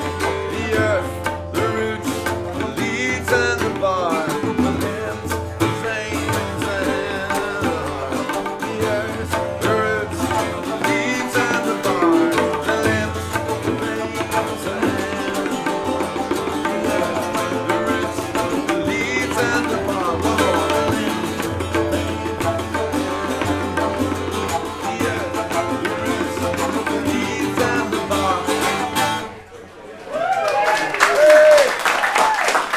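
Live acoustic trio playing a tune: tabla drums, a low flute with a curved headjoint, and a plucked long-necked, round-backed string instrument. The music stops abruptly near the end.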